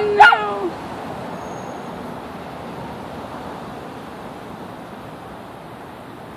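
A dog giving two sharp, high yips right at the start, the second drawn out into a short whine, followed by steady outdoor background noise.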